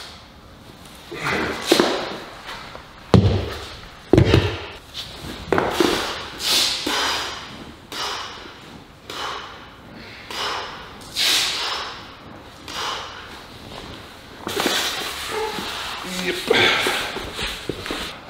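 A lifter breathing hard during heavy incline dumbbell presses with 40 kg dumbbells: a forceful, hissing exhale roughly every one to two seconds, one for each rep. Two dull thuds come about three and four seconds in.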